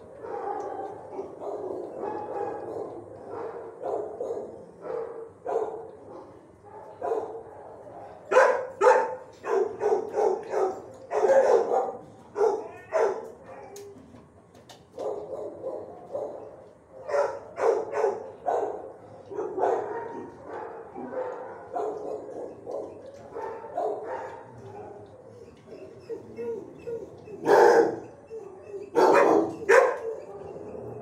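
Dogs barking in shelter kennels: repeated barks in bursts, busiest about a third of the way in, with two of the loudest barks near the end.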